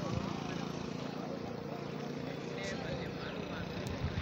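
Rain-swollen river in flood rushing past, a steady rushing noise, with faint voices of people in the background.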